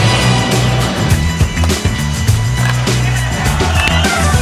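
Skateboard wheels rolling over a wooden skatepark course, with a few sharp knocks, mixed under loud background music.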